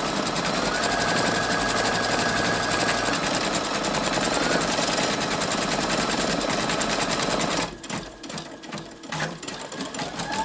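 Brother Innovis 2800D embroidery machine stitching a design at speed: a fast, steady needle chatter. About eight seconds in it drops away to a few separate clicks, then the stitching picks up again near the end.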